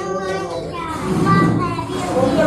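Young children's voices talking and chattering together, several overlapping high-pitched voices.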